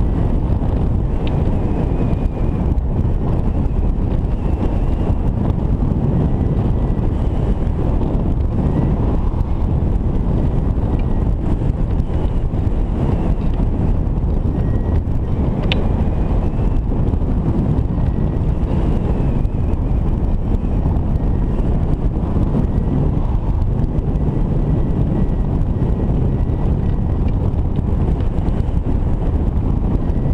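Steady wind buffeting the camera microphone on a hang glider in flight, a dense low rushing noise.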